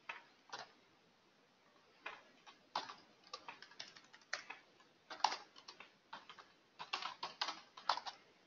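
Keystrokes on a computer keyboard: two clicks near the start, then an uneven run of quick keystrokes from about two seconds in.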